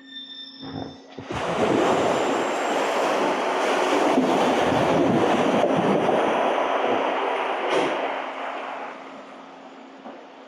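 A simulated tsunami bore surges down a concrete wave flume: a loud rush of turbulent water that starts about a second in, holds steady, and fades away near the end, with a sharp knock shortly before it dies down. A steady low hum runs underneath.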